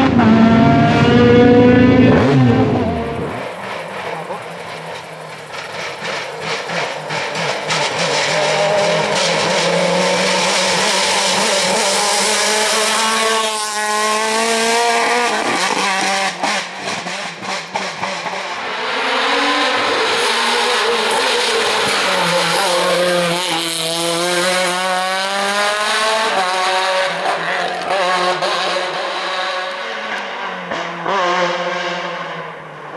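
Rally-style hatchback race car at full throttle on a hill climb. It is loudest at first as it powers away from the bend, then fades. Later it is heard again with the revs dropping and climbing through the gear changes.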